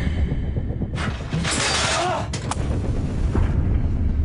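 Film-trailer sound design: a deep, steady rumble, with a rushing hiss about a second in that lasts just over a second, followed by a sharp click.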